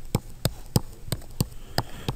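Stylus tapping on a tablet screen while drawing strokes: a run of about six light, sharp clicks, roughly three a second.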